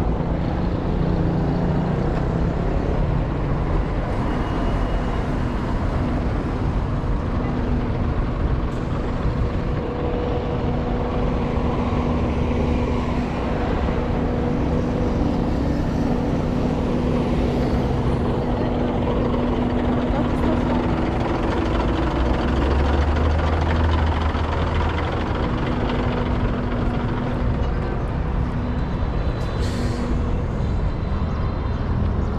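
City street traffic: a continuous wash of vehicle engines and tyres, with a steady engine hum through most of it and a heavier low rumble near the end, from passing cars, a bus and a motor scooter.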